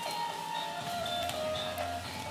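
Recorded gamelan accompaniment played back over a loudspeaker, heard at a distance, with a few long ringing notes.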